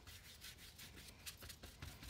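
Faint, scratchy rubbing of a flat paintbrush working acrylic paint onto paper in short, quick, irregular strokes.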